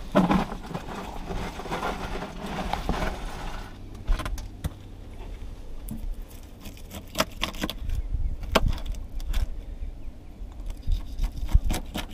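Knife cutting skipjack bait on a plastic cooler lid: scattered clicks and taps of the blade against the lid as the fish is sliced, with a rustling noise over the first four seconds and a low rumble underneath.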